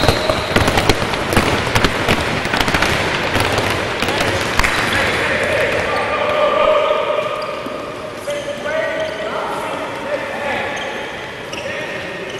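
Several handballs bounced by players dribbling on a sports-hall floor: a dense patter of overlapping bounces for the first few seconds, thinning out after about five seconds.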